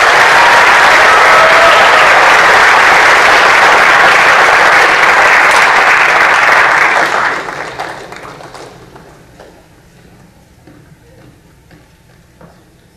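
Audience applauding loudly and steadily for about seven seconds, then dying away about eight seconds in.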